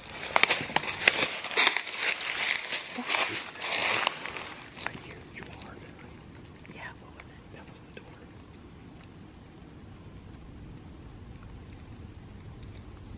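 Hushed whispering with sharp clicks and rustling for the first four seconds or so, then it falls quiet to a faint steady low rumble of background noise.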